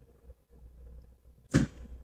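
Pause in a woman's talk: a faint low hum, then a short sharp noise about a second and a half in.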